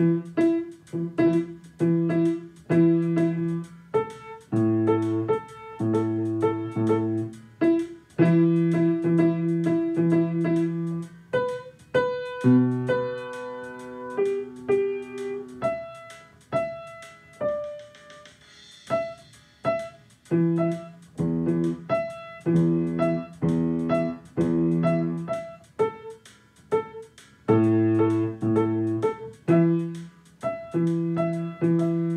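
Grand piano played in a blues jam: chords struck again and again in a steady rhythm, with melody notes over them. The playing goes quieter and sparser a little past the middle, then the chords come back.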